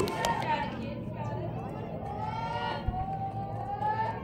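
Distant voices of players and spectators at a softball field, calling out and chattering, with a few long drawn-out calls. A single faint low bump comes near three seconds in.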